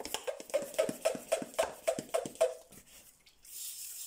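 A quick, even run of about ten short clacks, about four a second. Then, about three and a half seconds in, an aerosol can of brake cleaner starts spraying with a steady hiss, washing down a diesel fuel filter housing.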